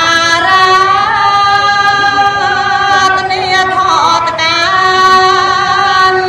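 A woman chanting Khmer smot, the Buddhist verse chant, solo and unaccompanied, holding long sustained notes that waver and glide in slow ornaments, with two more elaborate turns around the middle and near two-thirds of the way in.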